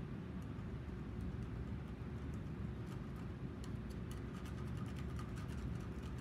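Steady low room hum, with a scatter of faint light ticks in the second half as paint is handled on a hand-held artist's palette.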